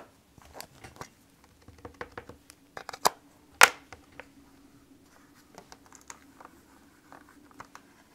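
Scattered light taps and clicks from inking a clear acrylic stamp with a Versamark ink pad and working a stamp-positioning platform, the sharpest click about three and a half seconds in. A faint steady hum runs underneath.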